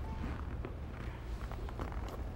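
Faint footsteps of shoes on a hardwood floor, a few soft taps over a steady low hum.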